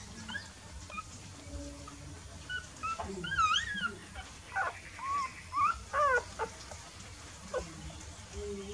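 Newborn puppies whimpering while nursing: a string of short, high squeaks that rise and fall in pitch, bunched in the middle, with one more near the end.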